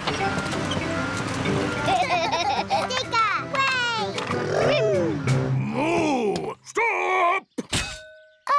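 Cartoon soundtrack music over a steady low machine hum from the road-works vehicles. From about two seconds in, voices or calls slide up and down in pitch over the music, which then breaks off abruptly near the end.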